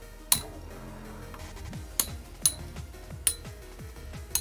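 Two Metal Fight Beyblades, Dark Gasher and Dark Cancer, spinning in a plastic stadium. Their metal wheels clash in four sharp clinks, over background music.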